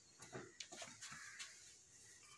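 Near silence, with a few faint short clicks in the first second and a half.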